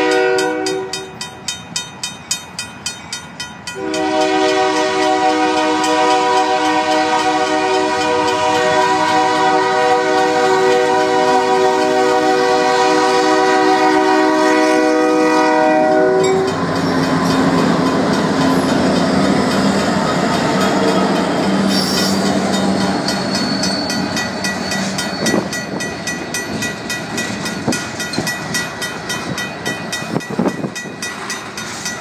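Union Pacific diesel locomotive horn sounding a chord: a short blast, then a long one from about four seconds in that lasts about twelve seconds, over the steady strokes of the crossing's RACO mechanical bell. After the horn stops, the locomotives pass with a diesel engine rumble, and then covered hopper cars roll by with wheels clattering over the rail joints.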